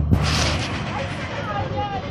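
Voices of people calling out in the street, high and drawn out, after a brief rush of hiss at the start.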